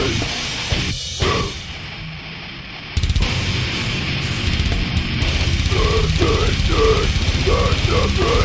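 Heavy breakdown backing track for harsh metal vocals. After a thinner stretch, a heavy, dense low end comes in suddenly about three seconds in. From about five and a half seconds, rhythmic harsh vocals repeat in short bursts over it.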